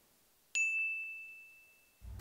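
A single bright bell-like ding sound effect about half a second in: one high clear tone that fades away over about a second and a half.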